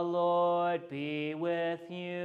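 A man chanting a line of the liturgy on a nearly level pitch, in long held syllables with two short breaks.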